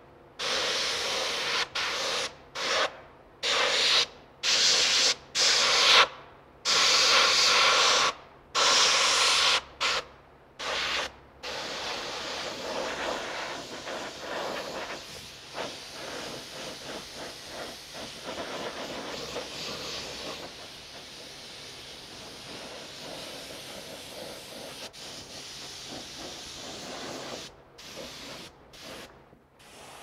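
Siphon-feed airbrush spraying thinned ink, its hiss switched on and off in a dozen or so short, sharp bursts over the first ten seconds or so, then settling into a softer, steadier hiss.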